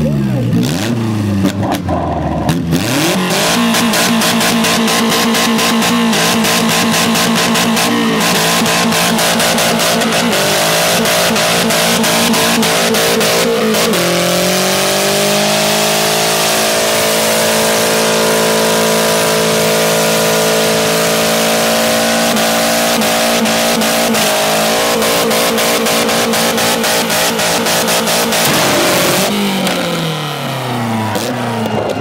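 Honda Integra four-cylinder engine held at high revs during a long burnout, with the hiss of the spinning tyres. Its pitch stays level, drops sharply about halfway and climbs back, and it falls away near the end.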